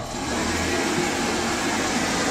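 Wall-mounted electric hand dryer running, a steady rush of blown air.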